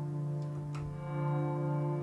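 A sustained ambient swell chord from the Guitars in Space Kontakt library's Guitar Swell preset, built from a clean electric guitar, with its delay effect being turned up. The held chord dips in level about a second in, then swells back up.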